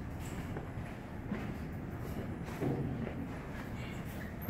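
A few irregular footsteps over a steady low rumble of background noise.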